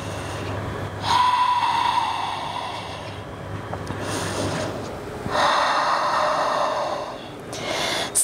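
A woman breathing deeply and audibly: a long breath about a second in and another from just past five seconds, as she resets her breath over two slow breaths.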